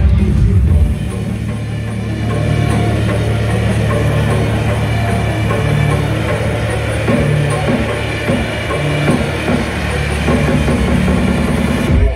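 Electronic dance music from a live DJ set, played loud over an arena sound system. After about a second the pounding low end gives way to a steady held bass note.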